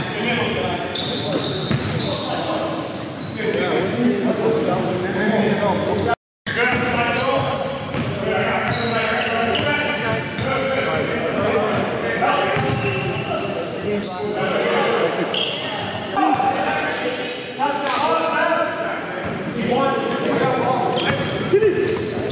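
Live sound of a basketball game in a gymnasium: the ball bouncing on the hardwood floor, sneakers squeaking and players' voices, all echoing in the hall. The sound cuts out for a moment about six seconds in.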